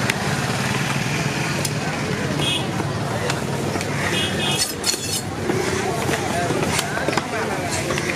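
Busy fish market din: background voices over a steady engine hum, with a few sharp knocks of a cleaver striking a wooden log chopping block, the loudest cluster about halfway through.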